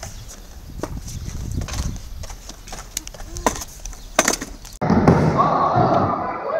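Low rumble with a few sharp clicks and knocks from skateboarding in a concrete skate bowl. Near the end it changes abruptly to children's voices and the thuds and clatter of skateboards on wooden ramps, echoing in a large indoor hall.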